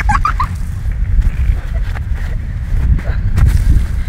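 Wind rumbling on the microphone throughout, with a brief high-pitched vocal squeal right at the start.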